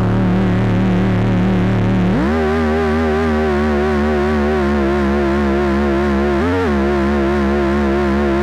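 Korg monologue monophonic analogue synthesizer playing one sustained note with a wavering vibrato. About two seconds in it glides smoothly up to a higher note, and it briefly bends up and back down again near the end.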